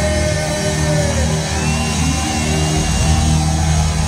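Heavy metal band playing live: distorted electric guitars over bass and drums at full volume, with a held, sliding guitar line in the middle of the sound.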